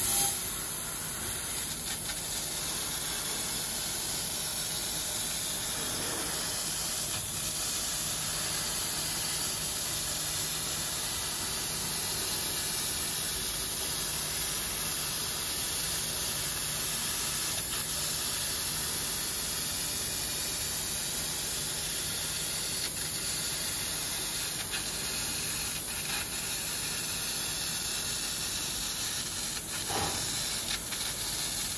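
AKJ1325F-2 fiber laser cutting machine cutting sheet steel: a steady, high hiss of the assist gas blowing from the cutting head's nozzle through the cut.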